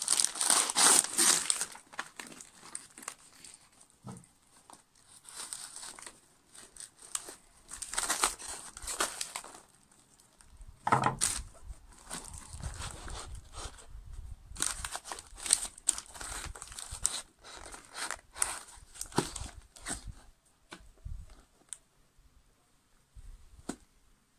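Paper wrapping being torn and crumpled off old axe heads, in irregular rustling bursts with short pauses between, loudest in the first second or so.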